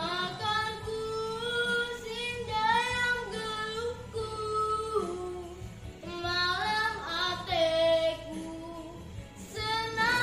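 A young girl singing solo, holding long notes and sliding between pitches.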